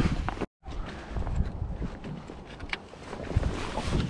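Wind buffeting the microphone in an aluminium rowboat on open water, with a few small knocks. The sound cuts out completely for a moment about half a second in.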